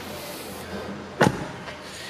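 A single solid thump of a Bentley Arnage's door shutting, a little over a second in.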